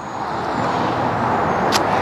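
Tyre and road noise of a passing car, growing steadily louder, with one short click near the end.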